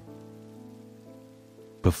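Soft background music: a sustained chord of several steady tones, easing off slightly, over a faint hiss of rain.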